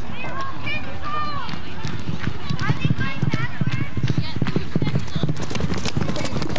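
Horse galloping on arena dirt, its hoofbeats growing louder from about two seconds in as it comes past close by, while onlookers shout and whoop in high voices.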